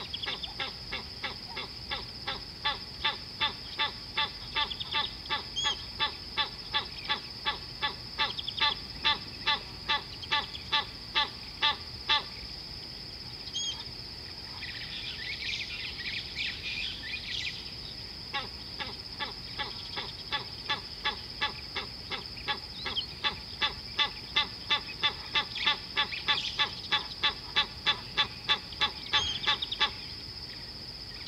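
A bird calling in a long series of short, evenly repeated notes, about three a second. It breaks off for several seconds midway, when scattered chirps are heard, then starts again, all over a steady high-pitched drone.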